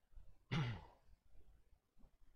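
A man's short sigh about half a second in, voiced and breathy, falling in pitch.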